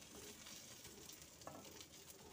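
Faint, steady sizzling of oil in a hot pan under banana-leaf-wrapped hilsa parcels. The burner has just been switched off, so the pan is cooling. A light tap comes about one and a half seconds in.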